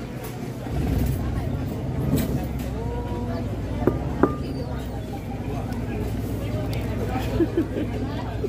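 Street ambience: voices of people chatting in the background, with a vehicle engine rumbling low from about a second in, and two short sharp high sounds near the middle.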